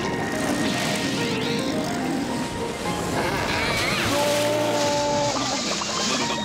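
Cartoon sound effect of a small outboard motor running and water spraying, steady and loud, over a music score whose held notes come in about halfway through.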